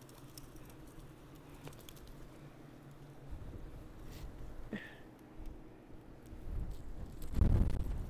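Wind rumbling on the microphone over fast-flowing river water, with faint scattered clicks from a spinning reel as a smallmouth bass is reeled in to the rocks. A strong gust of wind near the end is the loudest sound.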